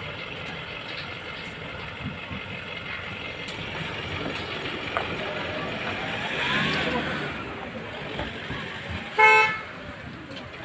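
Murmur of voices and outdoor background noise, then near the end a single short, loud toot of a vehicle horn.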